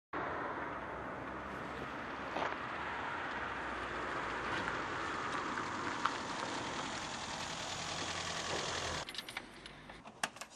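Steady car engine and road noise that cuts off suddenly about nine seconds in, followed by a few sharp clicks.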